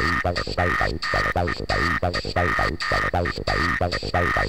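Hard trance acid track. A squelchy acid synth line plays a fast run of repeated notes, each one's tone sweeping down, over a held high synth chord and a pulsing bass.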